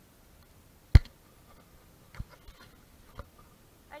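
Handling noise as hands holding a small fish bump and brush right at the camera: one sharp click about a second in, then a few fainter clicks.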